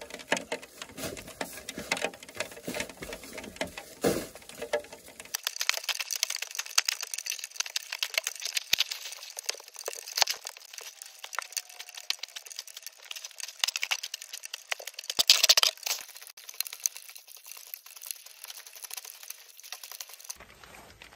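A snow shovel scraping and crunching through heavy, wet snow in a dense run of short strokes. After about five seconds the sound turns thin and tinny, and there is a louder burst of scraping about three quarters of the way through.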